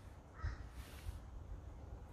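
A bird calling faintly, a brief harsh call about half a second in.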